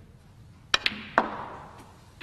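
A snooker pot. The cue tip strikes the cue ball, and a tenth of a second later the cue ball clicks sharply against a red. A third of a second after that comes a heavier knock with a short fading rattle as the red drops into a pocket.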